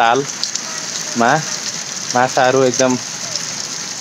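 Steady rush of water pouring from a row of spouts into a pool.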